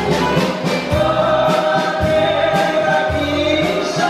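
Live band playing Greek taverna music: sung vocals held over bouzouki, guitar and drums, with a steady beat of about two hits a second.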